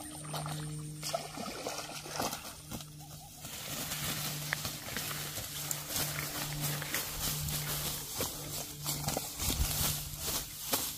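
Tall grass rustling and short knocks as a hooked fish is hauled up the bank and lands flapping in the grass, over a low hum that cuts in and out.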